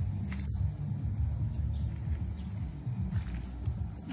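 Insects trilling steadily in one thin, high-pitched tone over a low, uneven rumble.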